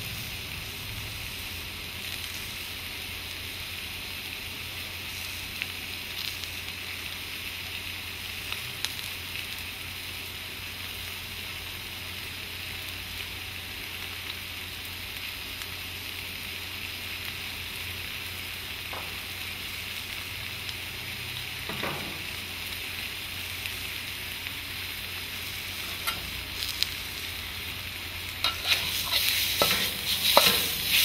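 Food sizzling steadily in hot oil in a steel wok, with a few faint ticks. Near the end a spatula starts scraping and tossing the food around the wok, much louder.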